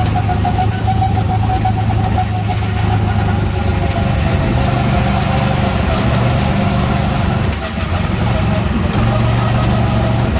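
Go-kart engine running steadily under way, with a steady whine above its low note. The engine's pitch steps up about four seconds in and drops back near the end.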